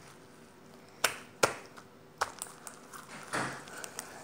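Slime with lotion being kneaded and stretched by hand: three sharp clicks and pops between about one and two seconds in, then a softer squelch near the end.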